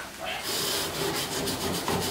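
Long-handled grill brush scraped quickly back and forth across a smoker's metal cooking grate, a run of rasping strokes that starts about half a second in, cleaning off cooked-on residue.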